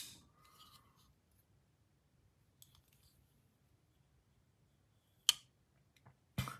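Folding knife blade being closed, with a few faint handling ticks and then one sharp click about five seconds in as the blade snaps shut.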